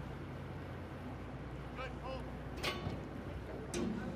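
Low, steady hum of a boat engine running. A sharp knock about two and a half seconds in.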